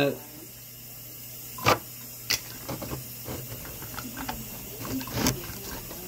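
Metal screw lid being put on and twisted down onto a glass mason jar: three sharp clicks and many small scraping ticks of metal on glass threads, over a steady low hum.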